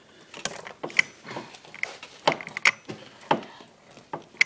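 Exposed clutch basket and gears of a Kawasaki KX250 clicking and clacking as the drive sprocket is turned by hand. A handful of separate sharp metallic clicks, each ringing briefly.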